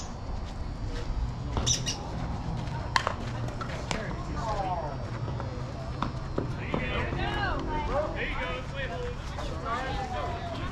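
Voices calling out across an outdoor softball field, with a single sharp crack about three seconds in.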